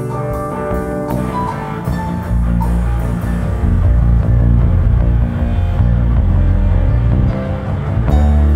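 Rock band playing: electric guitar, drums, keyboards and electric bass. Higher melodic notes lead at first, then about two seconds in a loud, moving bass line comes in and dominates the low end.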